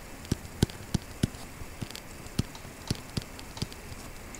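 Stylus tip tapping and clicking on a tablet screen while handwriting: about ten sharp, irregularly spaced ticks.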